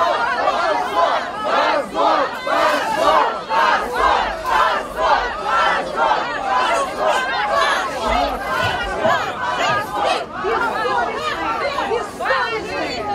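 A large crowd of people shouting together in a loud, rhythmic chant, pulsing about twice a second.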